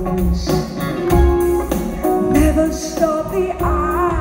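Live band playing a pop song with a woman singing lead into a microphone, drums keeping a steady beat.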